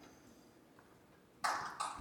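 Near silence, then a sudden sharp sound about a second and a half in, followed by a second one just before the end.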